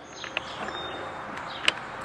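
Light clicks of a cordless hedge trimmer's safety lock-off and trigger being pressed with the motor off, the sharpest near the end, over faint outdoor background with a faint high chirp.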